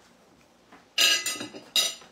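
Tableware clinking: two short clattering bursts, one about a second in and one near the end, as a metal spoon and a ceramic bowl and plate knock together.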